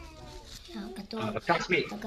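A young girl speaking, heard from the soundtrack of a TV report.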